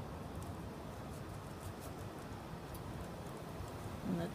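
Quiet outdoor background of steady low wind rumble on the microphone, with a few faint light clicks from hands handling a small painted canvas on a wire rack.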